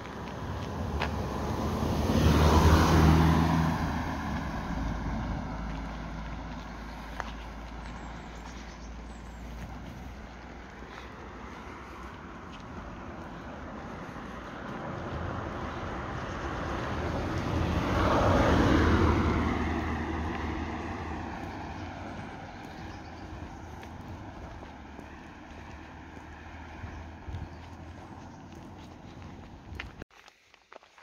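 Two motor vehicles pass one after the other. Each swells up and fades away: the first quickly, about three seconds in, the second building more slowly to a peak about eighteen seconds in.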